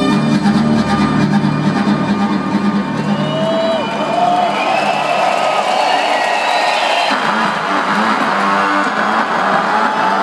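Live music playing loud through an arena sound system. Its bass drops away a few seconds in, and a dense wash of crowd noise swells over it in the second half.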